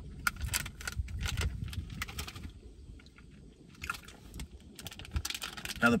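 Crinkly plastic snack wrappers of protein brownies being handled: a run of sharp crackles, a short pause near the middle, then more crackling.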